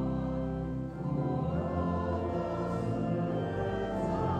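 A church choir humming a hymn in held chords, with a brief pause for breath about a second in.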